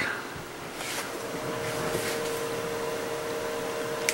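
Steady static hiss from radio test-bench equipment, with a low steady two-note hum coming in about a second in and holding.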